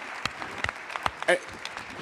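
Audience applause: irregular, scattered hand claps, with a brief voice about a second and a half in.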